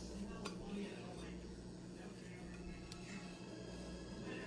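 Faint background voices over a steady low hum, with a couple of faint clicks.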